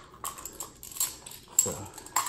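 A few light, sharp clicks and taps of small hard objects being handled, with a man's short spoken 'so' near the end.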